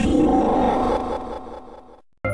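A logo sound effect: a loud, deep, rumbling hit that starts suddenly and fades away over about two seconds.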